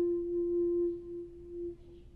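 Shakuhachi holding one long, steady note that thins and fades out after about a second, dying away: the closing note of a honkyoku piece.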